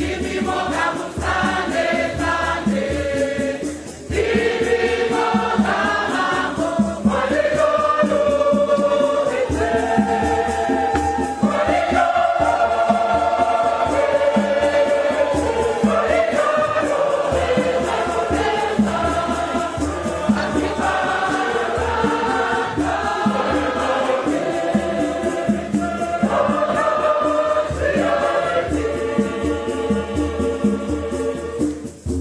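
A choir singing a Shona Catholic hymn of praise in several voices over a steady drum beat.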